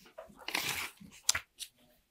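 Loose sheets of paper rustling as they are handled, in a few short rustles with a sharp crackle about a second and a half in.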